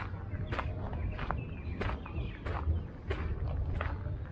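Footsteps of a person walking at an even pace on a paved park path, about three steps every two seconds, over a steady low rumble.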